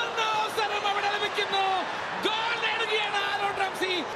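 Male football commentator shouting excitedly in Malayalam, in long high-pitched calls, over steady stadium crowd noise.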